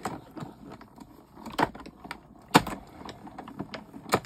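Plastic die-cutting plates being handled and set down over a die and card: scattered light clicks and taps, with two sharper knocks about one and a half and two and a half seconds in.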